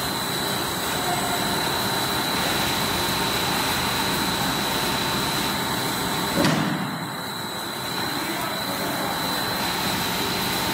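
Corn ring puff snack processing line running: steady machinery noise from the belt dryer and line, with a constant high-pitched whine through it. A brief knock sounds a little past six seconds in.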